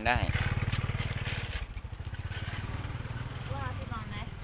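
A small motorcycle engine running nearby: a steady, evenly pulsing low rumble, loudest in the first second and a half. It sits under snatches of talk.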